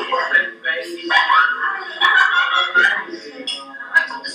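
Indistinct voices from a restaurant-scene video clip played back over the room's loudspeakers.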